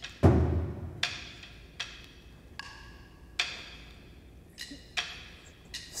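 Metal sai clinking: a sharp strike roughly every second, about eight in all, each with a brief metallic ring. The first clink comes with a low thud.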